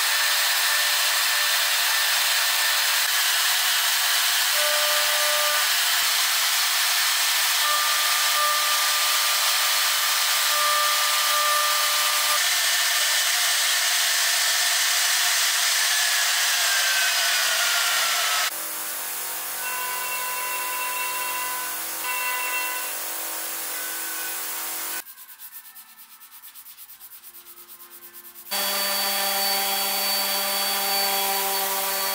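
CNC router spindle with a small bit milling into an end-grain hardwood block: a loud, steady cutting noise with a whine. At about 16 s the whine falls in pitch, and from about 18 s the sound is quieter. Near the end a random orbital sander starts up.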